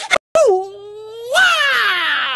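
A baby's long drawn-out wail: one cry that dips in pitch, holds steady for about a second, then swoops up and slowly falls away.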